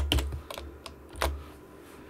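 Typing on a computer keyboard: a quick run of keystrokes, then a few single key presses, the last a little over a second in.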